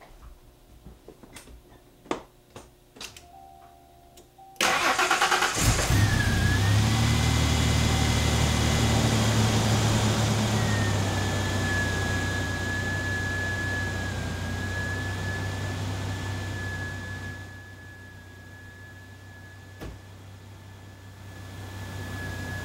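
An SUV's engine cranked and started: after a few faint clicks, it turns over about four and a half seconds in and catches at once. It then runs steadily with a high whine over it, the level easing gradually and dropping further about four seconds before the end.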